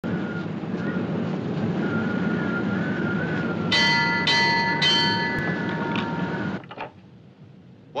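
A ship's crow's-nest warning bell struck three times, about half a second apart, each strike ringing on over a steady rumbling hiss. Three strikes is the lookout's signal for an object dead ahead. Everything cuts off abruptly a little before the end.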